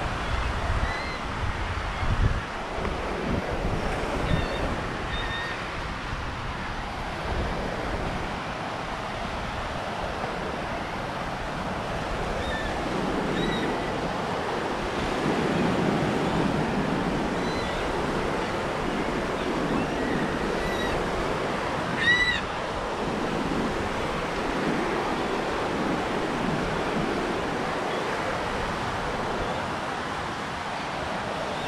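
Small Gulf waves washing onto a sandy beach in a steady surf wash, with wind rumbling on the microphone in the first few seconds. Faint high chirps come and go, and a bird gives one louder, short call about two-thirds of the way through.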